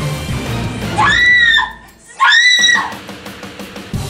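A woman screams twice, about a second in and again just after two seconds. Each high scream rises and then falls away, over background music.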